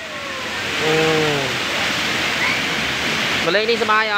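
Steady rush of shallow river water flowing over flat rock. A short voice call sounds about a second in, and speech starts near the end.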